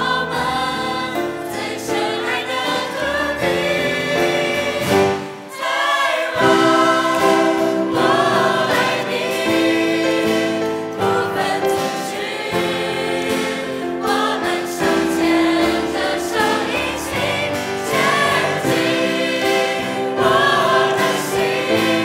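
A mixed choir of young men and women singing a song in Mandarin, with a short break about five and a half seconds in before the singing comes back louder.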